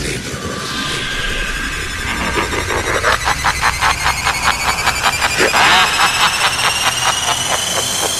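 Dubstep track in a build-up: the deep bass drops out, a synth sweep climbs slowly in pitch, and from about three seconds in a rapid roll of short drum hits runs under it.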